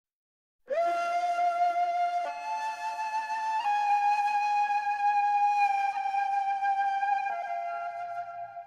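Soundtrack music: a solo woodwind playing a slow melody of long held notes, a few changes of pitch, starting after a brief silence.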